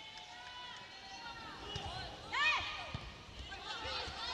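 Indoor volleyball court sound: sneakers squeaking on the court floor in short chirps, the loudest about two and a half seconds in, with a few dull knocks of ball contact over a low arena murmur.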